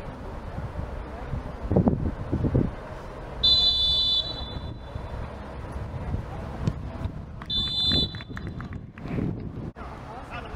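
Referee's whistle blown twice: a high, steady blast of almost a second about three and a half seconds in, and a second, shorter blast about four seconds later. Voices carry on underneath throughout.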